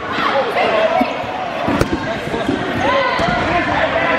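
Dodgeballs thudding on the gym's hardwood floor and against players, several sharp hits, the sharpest a little under two seconds in, over players' voices calling across the court.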